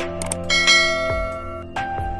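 Instrumental background music with bell-like chimes ringing over it, new notes struck several times.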